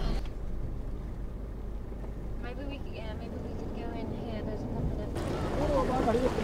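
Steady low rumble of a car's engine and road noise heard from inside the closed cabin, with faint voices from outside. About five seconds in the sound opens up into outdoor crowd voices.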